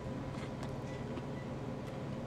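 Steady low room hum with a few faint, scattered clicks from a man chewing a mouthful of crisp Danish pastry with his mouth closed.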